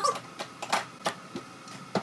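Several light plastic clicks and knocks as a Kobalt 40-volt battery pack is slid down and seated onto its charger.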